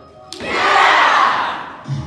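A group of voices shouting together in one loud cheer that starts suddenly a moment in and fades over about a second and a half. Music with a steady bass line comes in near the end.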